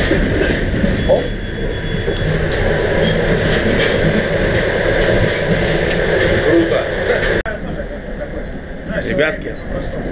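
Steady running noise of a moving passenger train, loud in the gangway between carriages once the connecting door is opened by its push button. The noise cuts off suddenly about seven seconds in.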